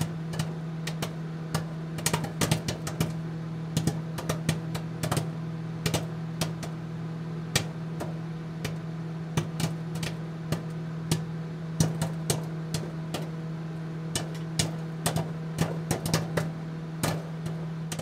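End-card outro audio: a steady low drone with many irregularly spaced sharp clicks and ticks over it.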